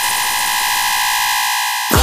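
Electronic music: a steady, bright synthesizer noise swell with held high tones and no bass, slowly getting louder, then cutting off near the end.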